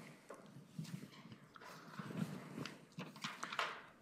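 Faint room noise with scattered soft clicks and knocks, a few each second: small handling and movement sounds in a quiet classroom.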